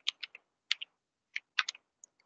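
Typing on a computer keyboard: about ten separate keystrokes at an uneven pace, some in quick pairs, with short gaps between.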